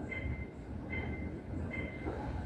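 Low, steady rumble of airport terminal ambience, with a short high tone that repeats about once a second.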